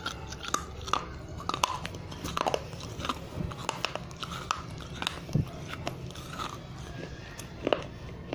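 A piece of fired clay diya being bitten and chewed: irregular, sharp crunching cracks several times a second as the dry baked clay breaks between the teeth, with a louder crack about five seconds in and another near the end.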